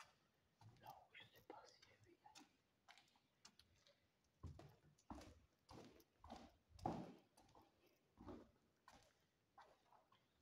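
Quiet footsteps on a gritty floor strewn with debris, about one step every two-thirds of a second, clearer in the second half.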